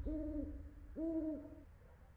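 An owl hooting twice: two even, slightly arched hoots about a second apart, each lasting about half a second.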